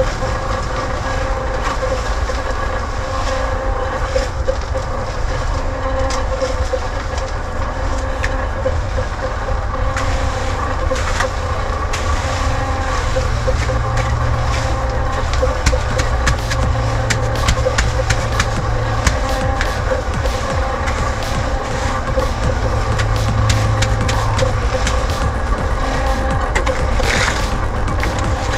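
A motor drones steadily throughout. From about ten seconds in, wet concrete is raked and pushed across the slab in many short, rough scrapes.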